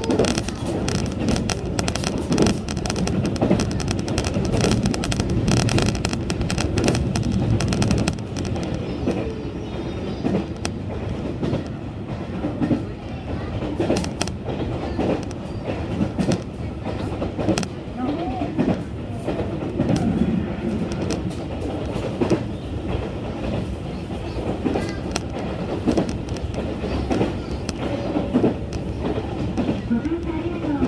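Train running at speed, heard from inside a passenger car: a steady rumble with rail clicks and clatter, louder and denser for about the first eight seconds, then easing to a lower level.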